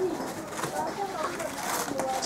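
Indistinct background voices talking, at a moderate level.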